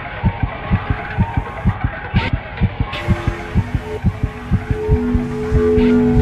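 Horror film trailer soundtrack: a fast, low throbbing pulse at about four beats a second, like a racing heartbeat. Held music notes come in about halfway and grow louder near the end.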